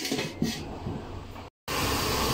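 A stainless steel lid set down on a wok with a few light metal clicks. Near the end, a steady hiss of broth boiling under the lid.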